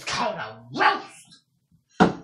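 A person's voice making two short unintelligible vocal sounds in the first second and a half, then a pause, and a sharp loud sound starting right at the end.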